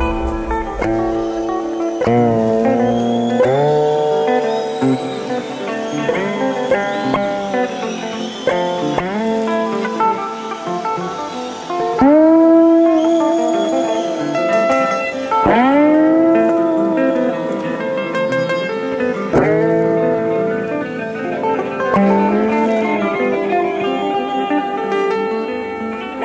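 Free-form live rock improvisation on electric guitar with no steady beat: sustained notes that swoop up in pitch as they start, several overlapping. The loudest entry comes about halfway through.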